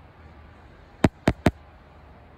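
Three sharp knocks in quick succession, about a quarter second apart and a little over a second in: handling knocks as the phone is moved and a small vinyl figure is brought up to the lens.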